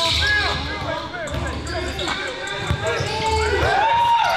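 A basketball being dribbled on a hardwood gym floor, with sneakers squeaking sharply as players cut and shuffle, and voices in the gym.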